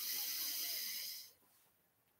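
A person taking a slow, deep breath in through the nose, a soft hiss that ends a little over a second in.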